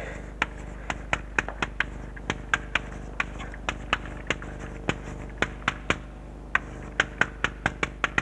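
Chalk tapping on a blackboard as words are written out: a run of sharp, irregular clicks, several a second, with a couple of short pauses.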